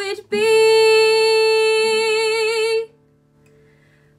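A young woman sings one long held note with a gentle vibrato over a soft acoustic guitar. The note ends a little under three seconds in, leaving the guitar ringing faintly.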